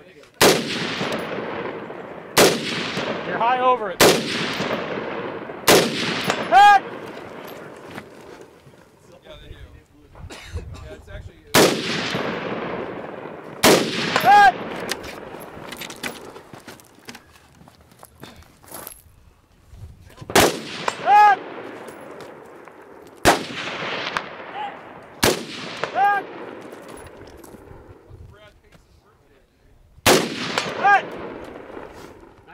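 Single aimed shots from a 5.56 mm AR-15 rifle, about nine of them spread out at one to several seconds apart, each with a long echo. After several of the shots a short ringing note comes back less than a second later: a bullet striking a distant steel target.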